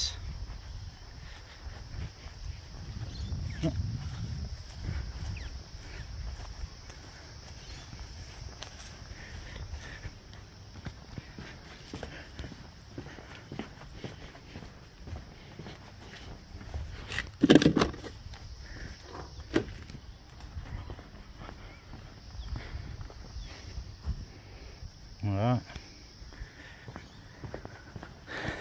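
Footsteps on grass, concrete and brick pavers as someone walks around a house yard, over a low uneven rumble. Two short voice sounds break in, one about 17 seconds in and one near 25 seconds.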